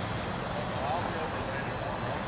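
Electric ducted-fan RC jet (Freewing F-22) flying overhead: a steady rush of air with a thin, steady high whine.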